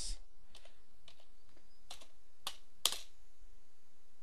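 A handful of separate computer keyboard key presses, about five sharp clicks spread over three seconds, as selected text in a code editor is deleted.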